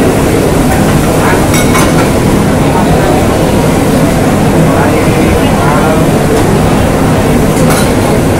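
Commercial kitchen din: a loud, steady rumble of gas wok burners and the exhaust hood, with indistinct voices and a few sharp clinks of bowls or utensils.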